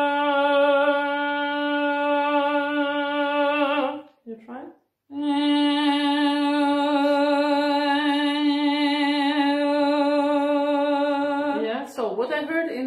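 Woman singing in classical style: two long held notes on the same pitch with a gentle vibrato, separated by a short breath about four seconds in. The tone balances bright ring (squillo) against roundness, and is judged a tiny bit too round, with too little squillo.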